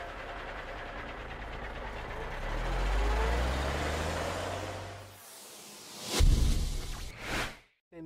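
A vehicle engine rumble with hiss, its low tone rising in pitch for a few seconds, then a loud low thump and a whoosh about six seconds in, with a second whoosh just after.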